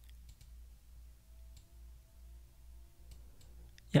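A few faint, separate mouse clicks over a low steady hum. A man says "yeah" at the very end.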